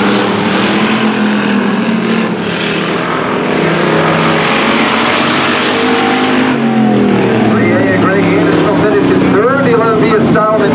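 Dirt-track hobby stock race cars running at speed, their engines a loud roar. About seven seconds in, the engine note falls away as they go by, and voices come in over the engines.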